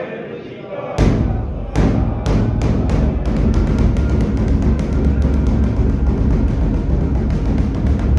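Large kettle drum (nagara) beaten hard, heralding the Guru Granth Sahib's procession. It starts about a second in with a few slow, heavy strokes, then settles into a fast, steady beat of about six strokes a second.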